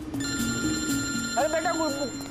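A mobile phone ringing: a steady, high electronic ring of several tones that starts just after the beginning and stops near the end, over background music.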